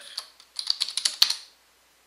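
Quick keystrokes on a computer keyboard as a password is typed at a terminal prompt. The hardest stroke comes about a second and a quarter in, and the typing stops about a second and a half in.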